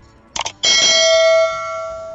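Subscribe-button animation sound effect: a quick mouse click about half a second in, then a bright bell ding that rings on, dropping in level about halfway through.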